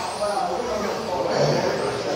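Electric RC touring cars' brushless motors whining faintly as they lap the track, under talk that echoes around a large hall.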